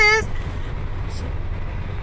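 Steady low rumble of car engine and road noise heard inside the cabin. A woman's sung note with wavering pitch ends just after the start.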